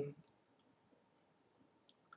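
A few faint computer mouse clicks in near silence, as a menu is opened and browsed.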